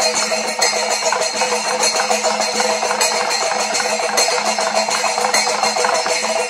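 Panchavadyam percussion: thimila hourglass drums beaten by hand in a dense, unbroken stream of strokes, with ilathalam brass cymbals clashing over them and a steady tone held underneath.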